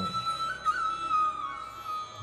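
Flute playing long, held high notes with small ornamental turns in a song's instrumental intro.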